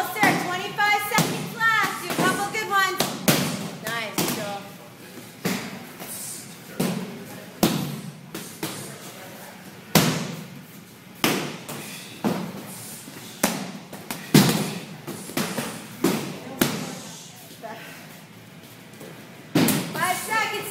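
Muay Thai kicks and punches landing, sharp thuds coming irregularly about once a second through a big training room. Voices are heard over the first few seconds.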